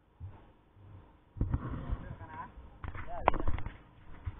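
Voices talking close by, starting suddenly about a second and a half in, mixed with several sharp knocks and bumps close to the microphone, the loudest near the three-second mark.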